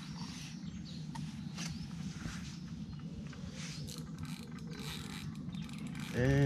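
Spinning reel working while a hooked barbel is played: a steady, fast mechanical ticking and whirring from the reel, its drag just set a little tighter because it was giving line too freely.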